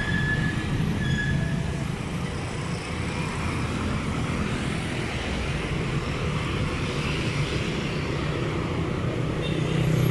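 City street traffic: motorcycles and cars passing close by, a steady mix of engine hum and tyre noise.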